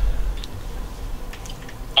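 Quiet room tone: a low steady rumble with a few faint, sharp clicks.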